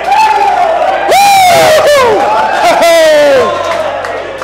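A group of men whooping and cheering in celebration: three long, loud 'woo' shouts, each falling in pitch at its end, with several voices overlapping.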